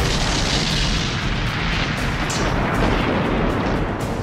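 A large fireball explosion: a sudden blast at the start, then a rush of noise that fades over two to three seconds into a low rumble, with a few sharp cracks in the second half.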